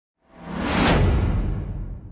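Cinematic whoosh sound effect for a title card: it swells in, peaks in a sharp hit about a second in, and leaves a low rumbling tail that fades away.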